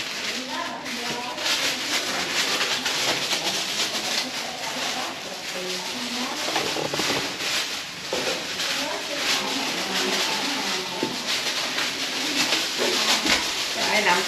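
Indistinct chatter of several people talking at once, over a steady hiss.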